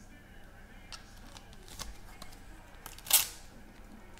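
Light handling noise of trading cards and plastic card holders: a few faint clicks, then one brief, louder swish about three seconds in.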